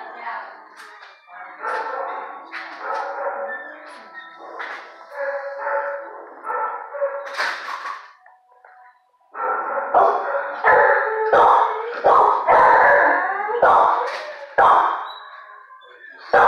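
A dog barking loudly and repeatedly, a run of sharp barks a little over half a second apart, starting about nine seconds in. Before that, background music with voices.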